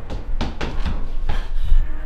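A run of sharp thuds, about two a second, over a steady low rumble.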